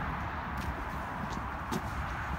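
Footsteps on concrete pavement, a few irregular scuffs and clicks, over a steady background rumble.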